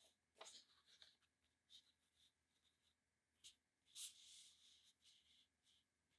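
Faint rustling and brushing of hands laying and smoothing a microfiber cloth on a heat press platen, in short scattered strokes, the clearest about four seconds in.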